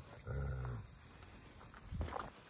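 Grey wolf giving one short, low growl about a quarter second in, during jealous squabbling between two wolves; after it there is near quiet.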